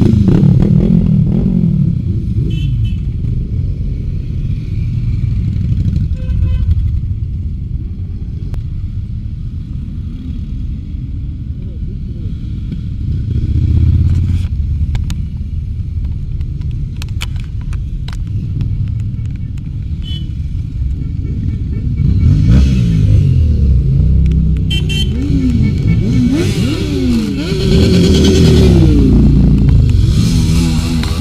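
Motorcycles passing one after another at close range: a steady low engine rumble, with engine notes rising and falling in pitch as bikes rev and go by. It is loudest near the start and again in the last several seconds.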